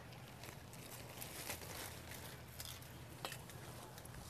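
Faint rustling of laurel leaves with a few sharp little clicks as winter-damaged leaves are picked and clipped off the hedge by hand and with pruning shears.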